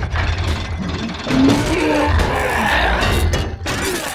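Dense action-film soundtrack: music over a heavy, continuous low rumble, broken by a few sharp impacts.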